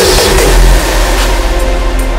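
Raw hardstyle track at a break in the beat: the kick drums stop and a loud, sustained, distorted low sound takes over, with noise across the highs.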